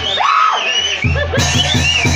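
Mexican banda music: brass lines over a pulsing low bass and drums.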